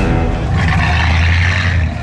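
Engine of a 1960s Plymouth hardtop as the car drives slowly away, a steady low drone with a rush of noise above it that drops off near the end.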